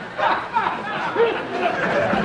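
Several voices chattering at once, a small group talking over one another.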